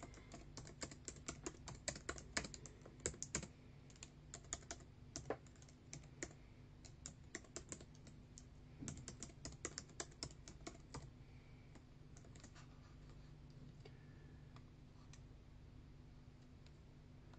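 Faint keyboard typing: quick runs of key clicks that stop about eleven seconds in, over a low steady hum.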